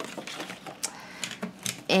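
Sheets of scrapbook paper being pulled out and handled, rustling and crackling as a string of irregular clicks and taps.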